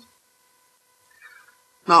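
Near silence in a pause between a man's spoken sentences, with one faint, brief sound just past a second in; his speech resumes at the very end.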